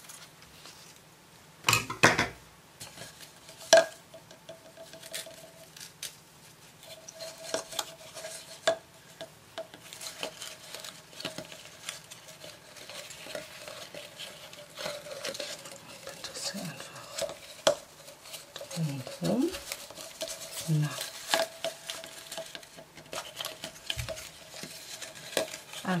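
Fabric scissors cutting through a satin ribbon with a sharp snip about two seconds in, and a second sharp click shortly after. Then soft rustling and small clicks as the ribbon is handled and tied into a double knot.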